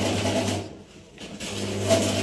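Clear plastic wrapping rustling and crinkling as it is handled, dropping away briefly partway through and starting again, over a steady low hum.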